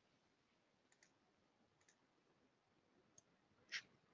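Near silence with a few faint computer mouse clicks about one and two seconds in, and a sharper click just before the end.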